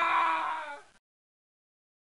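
A held, steady pitched tone that fades out about a second in, followed by silence.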